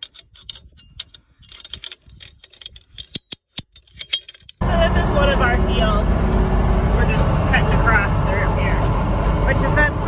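Sharp metal clicks of an in-line ratchet strainer being worked to tension high-tensile fence wire. About four and a half seconds in, a sudden cut to a tractor engine running steadily, loud from the driver's seat.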